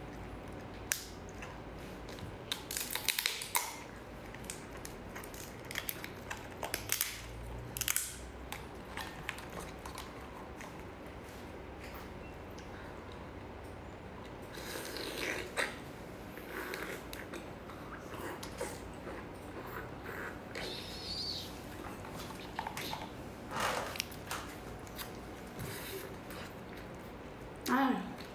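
Close-up eating sounds from a large cooked lobster: its shell cracked and torn apart by hand in irregular crackles and clicks, with wet squishing and chewing as the meat is bitten and eaten.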